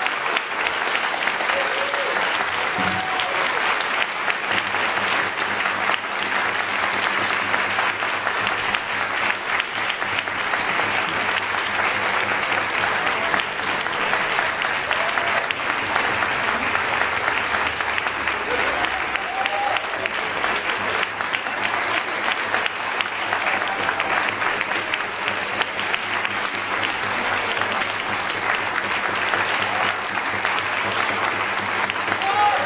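Audience applauding steadily and continuously.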